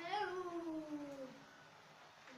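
A young boy singing one long, drawn-out note that rises briefly, then slides slowly down in pitch and fades out about a second and a half in.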